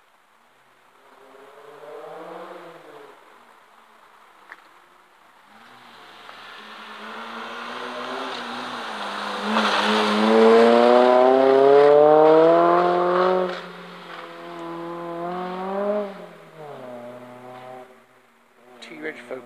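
Rally car approaching and passing at full throttle, its engine pitch climbing steadily as it accelerates and gets loud. The pitch drops briefly, climbs again, then fades as the car pulls away. A fainter engine is heard briefly a couple of seconds in.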